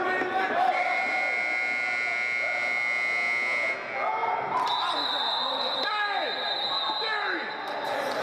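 Two long, steady high-pitched signal tones, a lower one starting about a second in and lasting about three seconds, then a higher one for about three seconds, over voices shouting and talking in a large echoing indoor hall.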